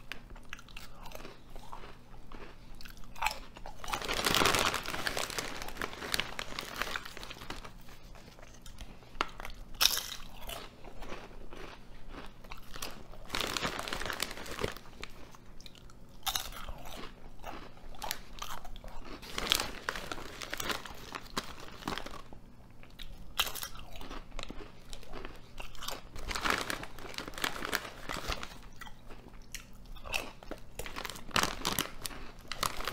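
Ruffles ridged potato chips being bitten and chewed. Crisp crunches and crackling chews run on throughout, with louder bites every few seconds.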